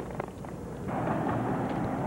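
Low steady rumble with a hiss that comes up slightly about a second in.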